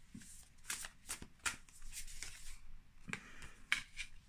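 A deck of oracle cards being shuffled by hand: a run of quick, soft papery riffles and clicks. Near the end a card is laid down on the wooden board.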